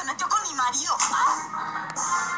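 A woman's voice, cut off about a second in by a sudden sharp hit as a fight breaks out, followed by background music.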